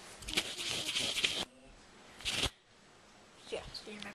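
Rustling and rubbing handling noise from a camera being moved and gripped close to its microphone, with brief voice sounds mixed in. A loud stretch stops abruptly about one and a half seconds in, and a short rustle comes about a second later.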